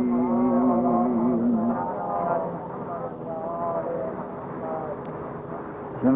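A man chanting an Arabic sermon opening holds one long note that ends about two seconds in. Fainter, shorter vocal sounds follow at a lower level.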